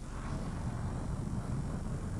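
Steady low rumbling background noise with no distinct events, like outdoor ambience.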